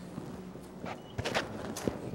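A person's footsteps: a few sharp steps begin about a second in, as someone walks up to speak.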